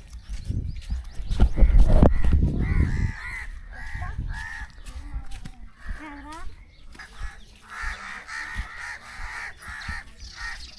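Crows cawing repeatedly, several overlapping calls that thicken into a busy chorus toward the end, after some low thumps in the first two seconds.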